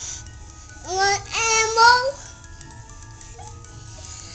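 A high-pitched voice: one drawn-out vocal sound about a second in, rising in pitch and lasting about a second, over faint steady background tones.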